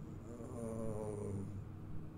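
A man's voice holding a long, level 'uhhh' hesitation sound for about a second and a half while searching for a word.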